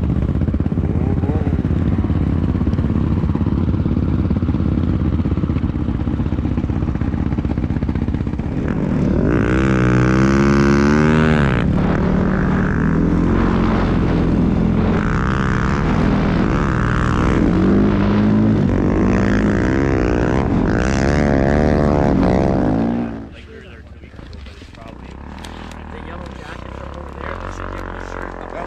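Snowbike engine running hard as it rides through deep powder, its pitch rising and falling with the throttle. About 23 s in the sound drops suddenly to a quieter low rumble.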